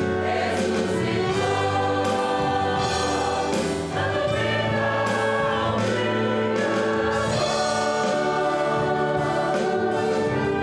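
A church choir singing a Portuguese hymn with instrumental accompaniment.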